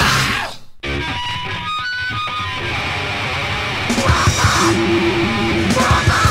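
A loud hardcore punk recording cuts off within the first second. After a brief gap the next track opens with distorted electric guitar picking single notes, and drum hits join about four seconds in.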